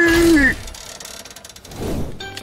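A cartoon character's long drawn-out vocal cry on one pitch that slides down and breaks off about half a second in. A quieter stretch follows, then a rising whoosh near the end.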